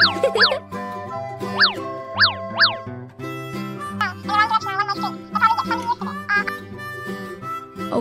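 Light children's background music with quick falling-pitch cartoon sound effects, two in the first half second and three more around two seconds in. From about halfway, a wavering melody takes over above the chords.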